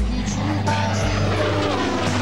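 Propeller-driven warbird's piston engine during a low flypast, its pitch falling as it passes, with background music underneath.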